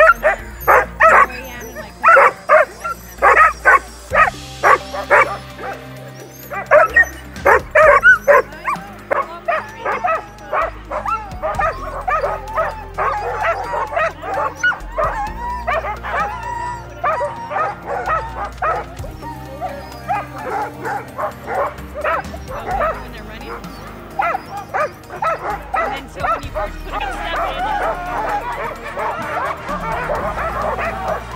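A team of harnessed sled dogs barking and yipping over and over, the excited clamour of dogs eager to run. The barks come loudest and most separate in the first few seconds and merge into a continuous yelping chorus near the end.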